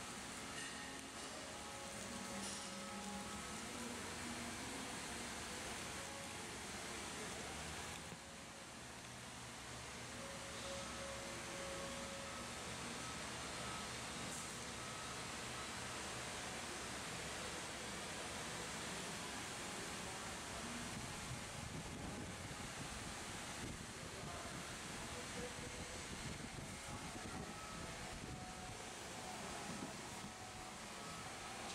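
Razor blade in a holder scraping paint overspray off waxed automotive paint, a faint scraping over a steady background hiss.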